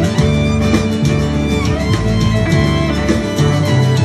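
A live country band playing an instrumental passage: a bowed fiddle over acoustic guitar and keyboard.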